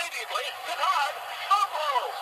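Thin, tinny recorded sportscaster voice playing from the small speaker of the Mattel Talking Monday Night Football Sportscaster Voice Unit, a toy record player reading out a play call from one of its small records.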